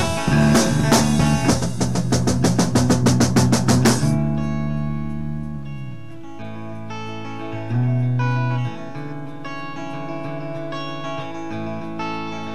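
Instrumental midwest emo band recording: guitars, bass and drum kit playing together, the drum hits quickening into a fill that stops about four seconds in. After that, guitars ring on without drums, with low bass notes swelling in twice.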